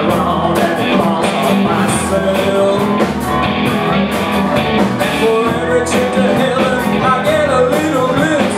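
Live band playing a rock-and-roll song: drum kit, upright bass and a singing voice, with the drums keeping a steady beat.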